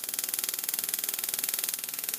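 Waterlase dental laser handpiece running, a steady hiss of its water spray with a fast, even pulsing under it.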